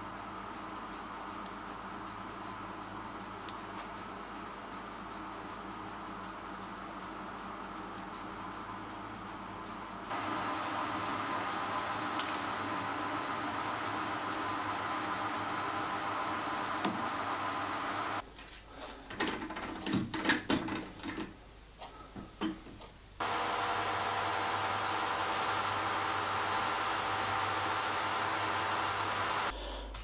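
Small metalworking lathe running steadily while a steel spindle is given a final polish with one-micron compound. About two-thirds of the way in, the hum drops out for a few seconds of light clinks and handling knocks, then the lathe runs again.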